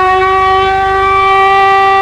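Electric alarm horn sounding the scramble alarm at a fighter base, calling the alert pilots to their jets: one loud, steady, unbroken tone.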